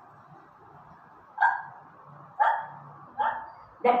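A woman imitating hiccups: three short, sharp hiccup sounds about a second apart.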